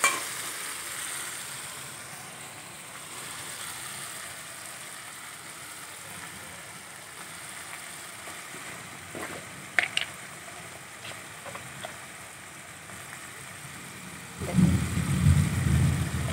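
Potatoes, onion and tomato masala frying in a steel kadai with a steady sizzle. A few light clicks of the metal spatula on the pan come about ten seconds in, and a louder low rumble comes near the end.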